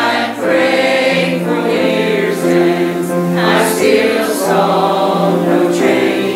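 Mixed church choir of men and women singing a gospel song in parts, holding long notes, with a brief breath between phrases just after the start. A piano accompanies them.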